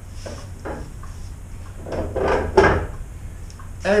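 A heavy wooden bookbinder's cutting block being set down and shifted into place: a few wooden knocks and scrapes, the loudest about two and a half seconds in.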